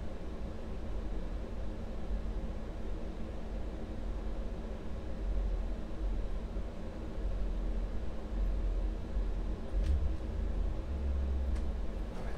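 Steady low rumble with a faint hum, with two light clicks near the end.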